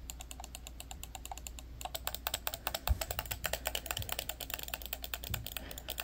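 Quick, irregular clicking of the plastic buttons on a small corded handheld device pressed with the thumbs. The clicks come faster and closer together from about two seconds in.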